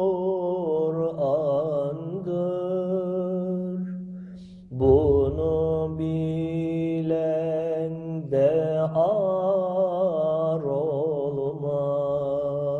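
Unaccompanied Turkish Sufi hymn (ilahi) sung by a male voice in long, ornamented melismatic phrases over a steady low vocal drone. There is a short break about four seconds in before the next phrase comes in strongly.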